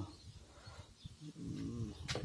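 A man's drawn-out hesitation sound, an "uh" between words, in the second half, after a second of near quiet with faint handling ticks.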